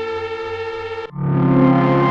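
Sequential Prophet 12 synthesizer patch holding a sustained tone rich in overtones. About a second in it cuts off abruptly, and a different, lower sustained sound swells in.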